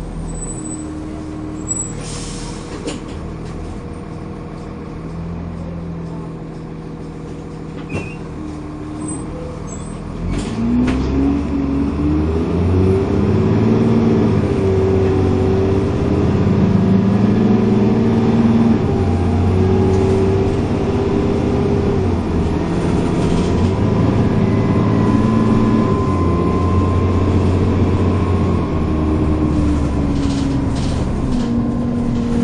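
Dennis Trident 2 double-decker bus heard from inside the saloon. Its diesel engine runs steadily at first, with a short hiss of air about two seconds in. About ten seconds in the bus pulls away hard: the engine note rises, grows louder and climbs again through several automatic gear changes, with a faint whine above it.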